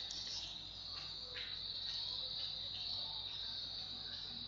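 A steady, high-pitched background buzz with no speech.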